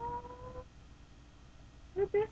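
A girl's short high hum, one note held for under a second with a slight rise in pitch.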